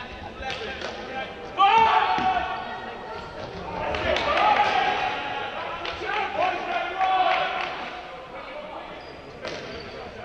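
Echoing sports-hall sound of an indoor ultimate frisbee game: players shouting on court over footfalls and shoe squeaks on the wooden floor. The loudest shout breaks in suddenly about a second and a half in, with more calls around the middle.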